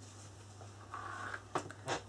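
Quiet room with a steady low electrical hum; a brief soft rustle about halfway and two faint clicks near the end as hands reach to handle a card album.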